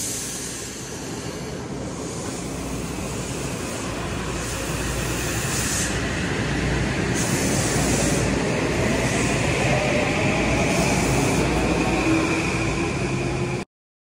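M8 electric multiple-unit commuter train pulling out of the platform: a continuous rumble of the passing cars with a rising whine from the traction motors as it picks up speed. The sound cuts off suddenly near the end.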